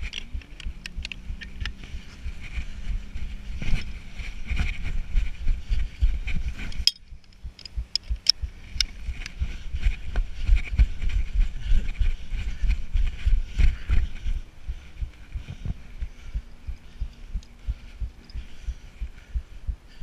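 Irregular low thumps and rumble from a body-worn action camera jostled as its wearer moves about, with scattered clicks and a faint steady hum in the background.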